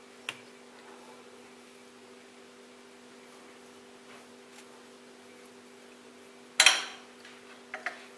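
Faint clicks and scrapes of a metal table knife spreading cream cheese on a bread roll on a ceramic plate, with one short, sharp clatter of the knife against the plate about six and a half seconds in. A steady low hum runs underneath.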